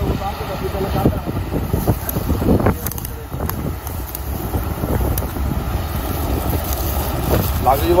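Steady low rumble of a combine harvester at work in the wheat field, with wind buffeting the microphone.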